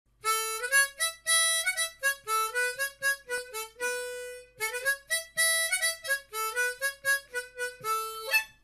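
Solo harmonica playing a lively tune of short notes, with one longer held note about four seconds in.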